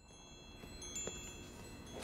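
Faint chime tones fading in from silence: several high ringing notes held steady, with another struck about a second in.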